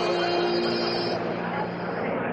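Crowd chatter and general din of a busy exhibition hall full of people, with a steady held tone under it that stops a little over a second in.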